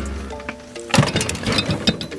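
A kick against a refrigerator's thin sheet-metal side: one sharp thump about a second in, then a few lighter clanks, denting the panel. Background music plays throughout.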